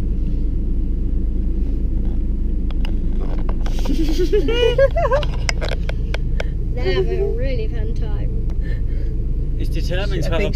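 Steady low rumble of a car with its engine idling, heard from inside the cabin. About four seconds in a person's voice rises in a drawn-out exclamation, with shorter vocal sounds a few seconds later and a few scattered clicks.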